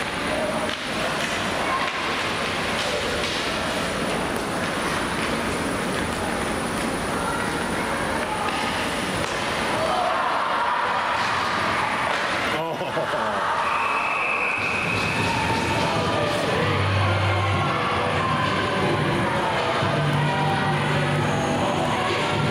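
Ice hockey rink sound: voices of a small crowd and players over the scrape of skates, with one sharp crack of a stick on the puck about halfway through, then a short high whistle as the noise grows and fans cheer.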